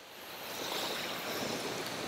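Water spraying from an adjustable anodized-aluminum fire-hose nozzle on a garden hose, a steady hiss that grows louder over the first half-second as the nozzle is opened wider toward its wide-stream setting.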